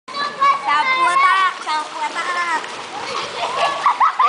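Children's high-pitched voices calling and shouting over swimming-pool water splashing. The voices are strongest in the first half, and the splashing and general noise carry the second half.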